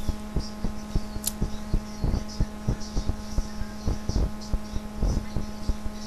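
Steady electrical hum with many short, irregular soft thumps and clicks over it.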